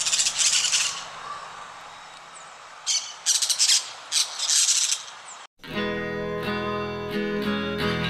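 Parakeets giving harsh screeching calls in three short bouts over a steady background hiss. About five and a half seconds in, the calls stop abruptly and a gentle acoustic guitar tune begins.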